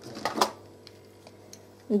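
A short rustle and clack of hands handling folded felt and picking up a pair of scissors, about half a second in, followed by a few faint small clicks.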